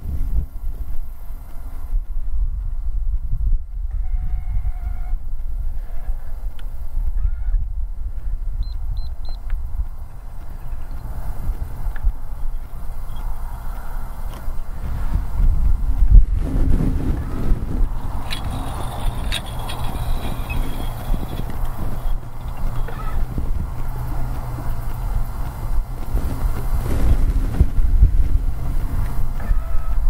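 Wind buffeting the boat-mounted camera microphone, a low rumble that rises and falls in gusts. A few faint short tonal calls come through around four to eight seconds in.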